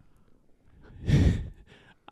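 A man's sigh: one breathy exhale about a second in.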